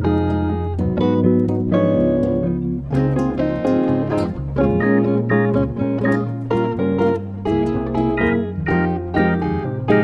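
Instrumental bossa nova from a guitar trio: plucked guitar chords over low bass notes, played at an even, relaxed pace.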